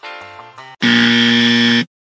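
Background music breaks off and a loud buzzer sound effect plays one steady tone for about a second, then cuts off suddenly.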